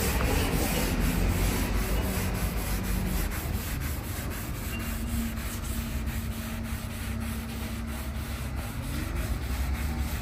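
Oil finish being rubbed by hand into the bare underside of a Japanese elm slab: steady rubbing strokes on the wood surface.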